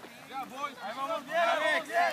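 Spectators' voices, people talking and calling out to the runners, quiet at first and growing louder through the rest.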